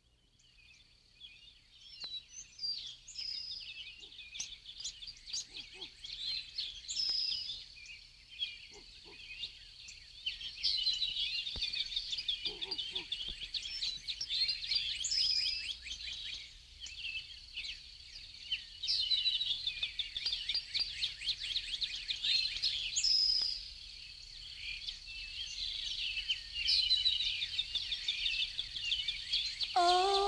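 A chorus of birds chirping and twittering, fading in from silence, with a thin steady high note running beneath the calls.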